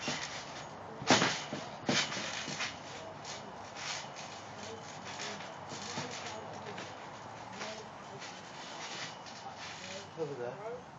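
Thuds of people moving and landing on a trampoline, with a sharp loud one about a second in and another just before two seconds, followed by a run of lighter knocks.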